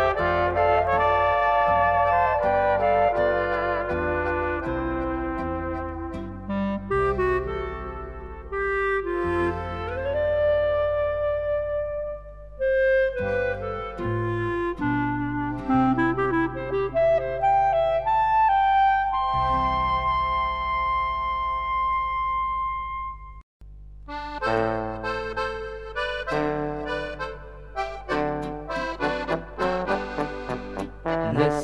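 Slovenian Oberkrainer-style folk band playing an instrumental passage on trumpet, clarinet and accordion over bass brass. The tune closes on a long held final chord, stops for a moment about three-quarters of the way through, and the next tune starts.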